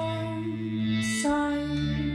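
Piano accordion holding sustained chords over a bass note, changing chord a little over a second in.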